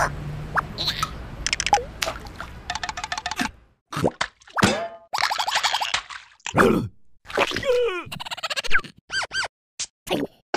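Cartoon sound effects and wordless character squeaks as animated larvae squeeze into a glass bottle: a quick run of clicks, then separate squelchy plops and sliding boing-like pitch glides with short silent gaps between them.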